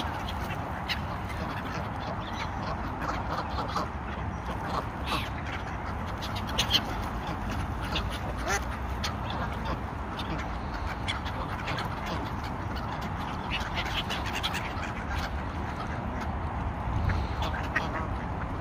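A flock of waterfowl on a lake, with ducks quacking off and on and other short bird calls mixed in, over a steady background hiss.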